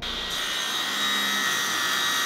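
A sliding-table panel saw running in a woodshop: a steady high-pitched whine over a rushing hiss.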